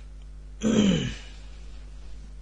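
A man briefly clears his throat once, a short vocal sound falling in pitch, a little over half a second in.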